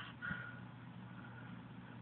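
Faint, steady background hum and hiss from a ceiling fan running in the room; the constricting snake itself makes no clear sound.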